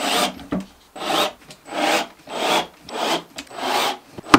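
A hand tool rasping against the wood of a drawer box in even back-and-forth strokes, about one and a half to two a second.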